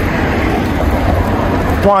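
Steady outdoor street noise with a low rumble from road traffic, with a man starting to speak near the end.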